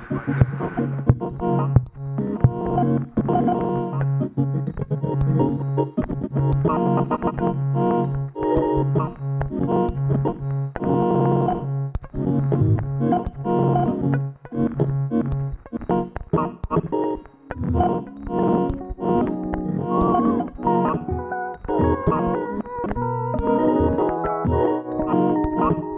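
Improvised electronic music from patched Ciat-Lonbarde Plumbutter and Cocoquantus synthesizers. A low tone pulses in an even rhythm under choppy, stuttering chords and clicks. The low pulse breaks up about two-thirds of the way through while the stuttering layers carry on.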